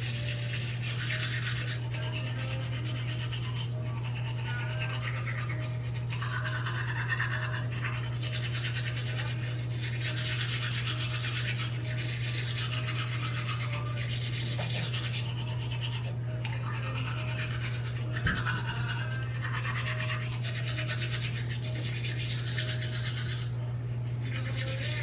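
Manual toothbrush scrubbing teeth in scratchy bursts of a second or two with brief pauses between strokes, over a steady low hum.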